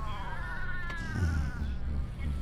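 One long, drawn-out wavering wail that rises and then falls in pitch, like a moan or a cat's yowl, over the low steady rumble of a moving car's cabin. A single click comes about a second in.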